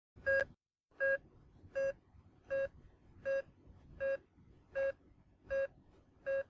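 A patient heart monitor beeping steadily: eight short, identical electronic beeps, about 80 a minute, like a pulse.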